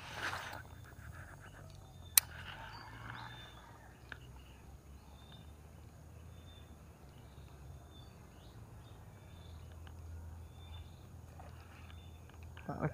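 Quiet pondside outdoor ambience with a faint short high chirp repeating about once a second and a low steady rumble. There is a brief rush of noise at the very start and a single sharp click about two seconds in.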